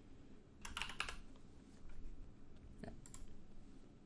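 Faint typing on a computer keyboard as an email address is entered: a quick run of keystrokes about a second in, then scattered single keys.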